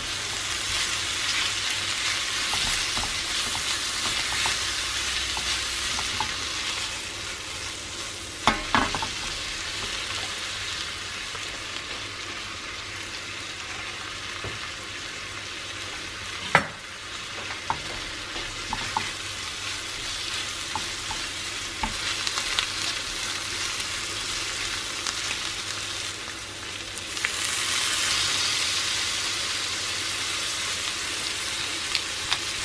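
Prawns and chopped garlic sizzling in hot oil in a small steel frying pan, stirred with a spatula, with a few sharp clicks from the spatula against the pan. The sizzle swells louder near the end.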